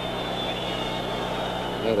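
Steady background noise of an old television broadcast recording: a low hum and hiss with a faint, steady high-pitched whine.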